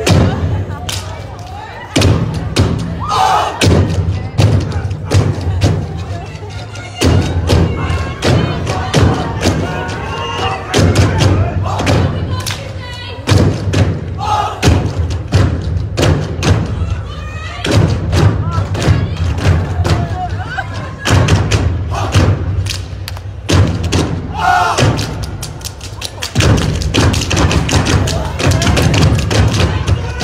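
Step team stomping and clapping on a stage, sharp thumps coming thick and fast throughout, over loud music with a heavy bass beat.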